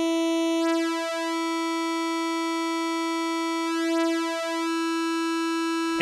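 Nord Stage 3 synthesizer holding one bright sawtooth note layered with a detuned second saw oscillator. The tone wavers and beats twice, about a second in and again about four seconds in, as the detune is turned by hand, and stays steady in between. The hand sweep is even too abrupt for the slow in-and-out-of-tune drift being sought.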